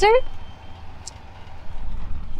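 A vehicle engine idling: a low, steady rumble after a voice trails off at the start, with one faint click about a second in.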